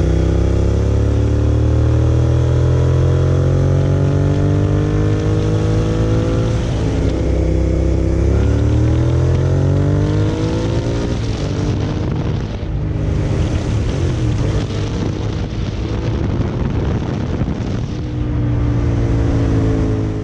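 2001 Suzuki SV650's 90-degree V-twin accelerating hard through the gears. The engine note climbs, drops at an upshift about six and a half seconds in, and climbs again to a second shift near ten seconds. It then runs on with a rougher, noisier note that rises again near the end.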